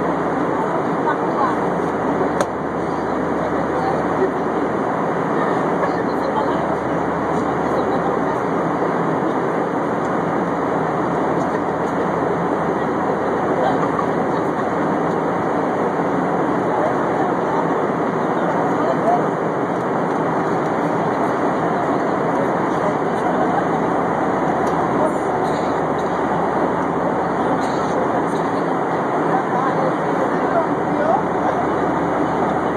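Steady cabin noise of an airplane in flight, heard from inside the cabin: an even, unbroken rush.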